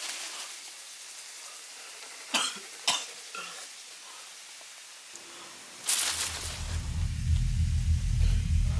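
A man coughing, a few short coughs in the first half, some about half a second apart. About six seconds in comes a sudden loud burst of noise, followed by a low steady rumble.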